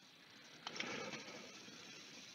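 A faint click about two-thirds of a second in, followed by a brief soft rustle that fades into quiet room hiss.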